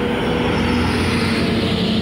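Engine of an International bus with an Ayco Magno body running as it pulls past close by: a loud, steady engine hum over a low rumble.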